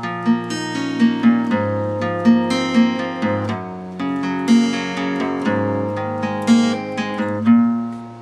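Acoustic guitar tuned a half step down, picking an arpeggiated chord pattern one string at a time. The notes ring into each other and the bass note changes about every two seconds.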